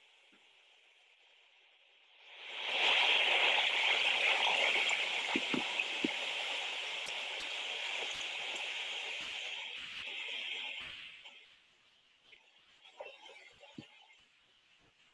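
Steady rush of a forest waterfall and stream from a nature video, heard through a video call's shared audio. It swells in about two seconds in and drops away a couple of seconds before the end.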